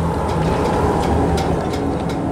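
A steady low mechanical rumble with a constant hum underneath, unchanging throughout.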